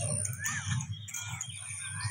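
Birds calling outdoors: three short arched chirps spread over two seconds, over a low rumble.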